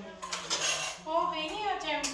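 Steel kitchen utensils clinking and clattering as pots and dishes are handled at a stove, followed about halfway through by a high-pitched voice.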